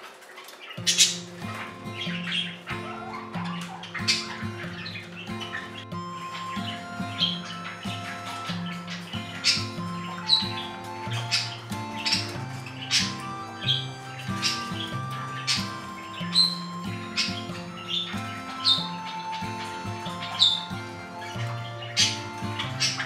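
Budgerigars giving many short, sharp chirps and squawks over background music, which comes in about a second in.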